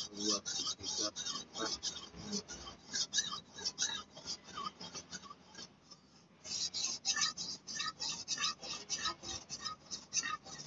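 A golok (machete) blade rasping back and forth across a wet, finer-grit whetstone, in quick, even sharpening strokes of about four a second, with one short break a little before six seconds in.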